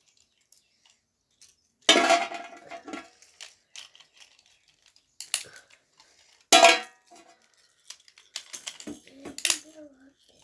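Beyblade spinning tops clattering in a large metal pan: a loud crash with a brief metallic ring about two seconds in as they are launched onto it, then scattered clacks of the tops hitting each other and the pan, with a sharp hit about six and a half seconds in.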